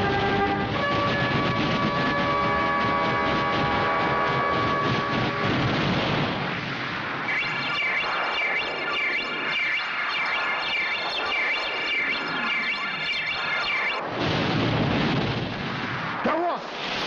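Dramatic film background score: held chords at first, then a high warbling electronic tone that pulses about one and a half times a second, and a loud rumbling noise near the end.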